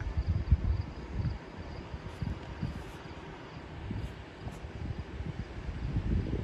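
Wind buffeting the microphone: an uneven, gusty low rumble with a faint hiss.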